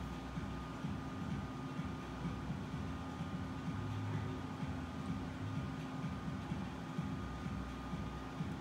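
Steady low machine hum of café equipment, with a faint constant tone held above it.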